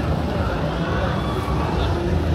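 City street noise: a steady low rumble of traffic and engines, with people's voices talking.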